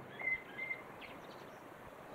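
Faint bird chirps, a few short calls in the first second, over a quiet outdoor background.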